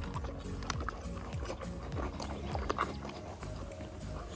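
A horse crunching and chewing feed pellets from a rubber feed tub close to the microphone, many short crunches, over background music.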